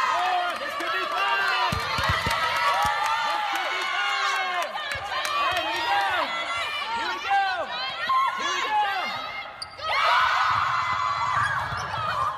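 Many rubber-soled sneakers squeaking on a hardwood gym floor as volleyball players shuffle and dig, with a few sharp thumps of the ball about two seconds in. A burst of voices comes in near the end.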